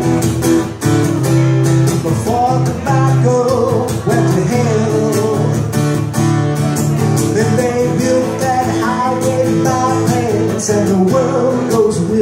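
A man singing while strumming an acoustic guitar in a steady rhythm.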